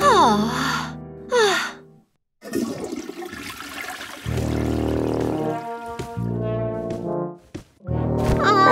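Cartoon music with gliding brass notes, a brief break, then a toilet flushing with a rush of water, followed by long, held brass notes.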